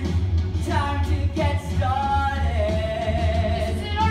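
Live musical-theatre singing with accompaniment; past the middle, one voice holds a long steady note over a steady low bass.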